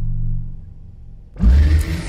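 Horror background score: a low sustained drone fades away, then a sudden loud hit comes about one and a half seconds in and carries on as a rumbling, hissing wash.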